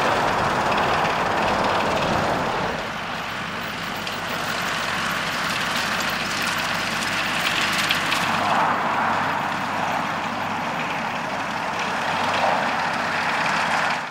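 John Deere 6120M tractor running under load while driving a SIP Spider tedder through cut grass, engine and spinning tedder rotors together as one steady machine sound. It drops a little in loudness about three seconds in and rises again.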